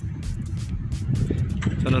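Wind buffeting a phone's microphone: a steady, uneven low rumble, with a man's voice starting just before the end.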